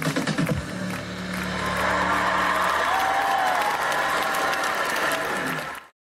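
Cheerdance music ends with a few closing beats and a held chord, and audience applause swells over it and then cuts off suddenly near the end.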